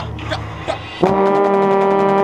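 Drum corps brass section, with a euphonium closest to the microphone, entering about a second in on one loud sustained note that holds steady.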